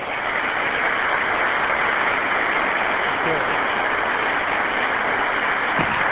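Audience applauding steadily as a long, dense round of clapping.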